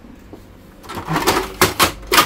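Plastic clattering, then two sharp clicks, from a desktop inkjet printer's rear roll holder and film roll being handled, starting about a second in.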